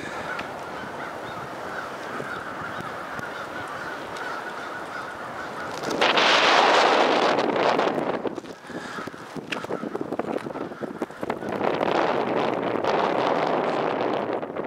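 A flock of geese honking in a steady chorus, interrupted about six seconds in by a loud rushing noise lasting about two seconds, which comes back from about eleven seconds.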